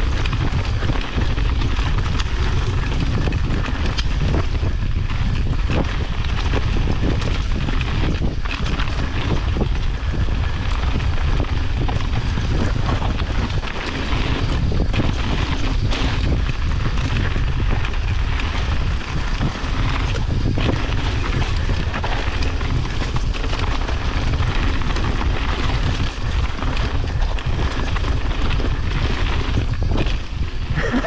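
Wind rushing over the camera microphone together with mountain bike tyres rolling down a rocky, slate-strewn trail, a steady loud rumble broken by frequent knocks and rattles from the bike hitting rocks.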